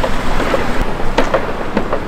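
Steady rushing noise of wind buffeting the microphone on an outdoor street, with passing traffic beneath it and a few light clicks.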